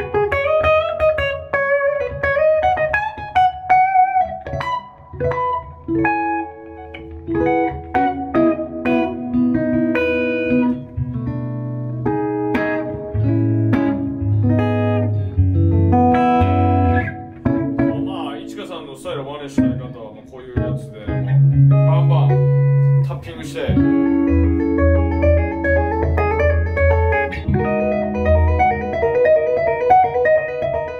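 Ibanez ICHI10-VWM electric guitar played through an amp: melodic single-note lines and ringing chords, with a passage of rapid, percussive strokes about two-thirds of the way through.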